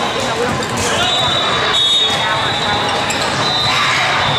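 Busy indoor volleyball hall: volleyballs being struck and bouncing, with players' and spectators' voices echoing around the hall. Several high, shrill held tones come and go throughout.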